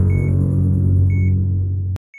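A loud, low droning hum that cuts off suddenly near the end, with a short high beep repeating about once a second.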